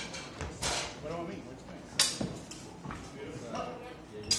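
Longswords clashing in a sparring bout: one sharp, loud strike about halfway through, with a softer scuffing noise before it and murmured talk around.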